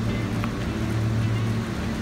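A steady low hum with faint music playing in the background.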